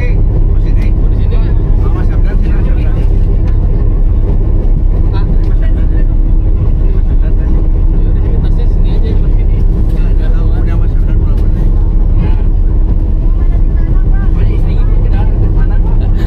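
Steady low engine and road rumble heard inside the cabin of a moving coach, with a constant hum.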